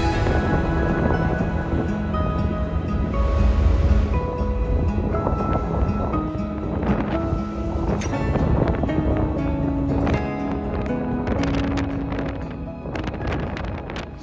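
Background music of held, slowly changing notes, fading near the end.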